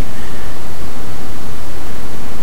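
Loud, steady hiss of broad noise with no other sound: the recording's own background hiss, left between spoken sentences.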